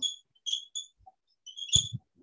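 Whiteboard marker squeaking on the board as it writes: a series of short, high squeaks, with a couple of knocks near the end.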